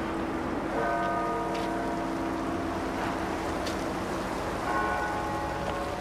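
Bells ringing, with a new stroke of several overlapping tones about a second in and another near the end, each ringing on and slowly fading over steady street noise.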